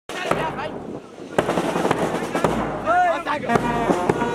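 A run of sharp, irregular knocks with voices over them, starting abruptly.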